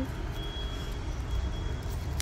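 Uneven low rumble of wind buffeting the microphone outdoors, with a faint steady high-pitched tone from about half a second in.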